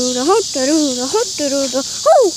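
A voice singing wordless 'do-da, ho-ho' syllables in a gliding up-and-down tune, over a steady high-pitched chorus of crickets.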